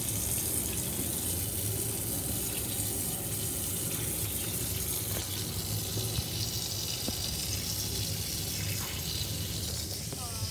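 Kitchen tap running steadily, the stream splashing onto a blue crab in a stainless steel sink as it is rinsed of sand and gunk, with a few light knocks from handling.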